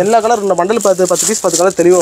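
A person laughing in a run of short voiced bursts.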